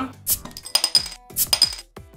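A stainless-steel card multi-tool's bottle opener clinking against the metal crown cap of a glass soft-drink bottle as it is pried at: several sharp, ringing metallic clinks, with background music.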